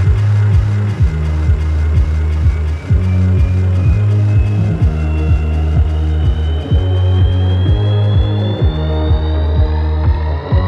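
Funky house track: a four-on-the-floor kick drum at about two beats a second under a deep, sustained bassline, with a rising synth sweep climbing in pitch through the second half.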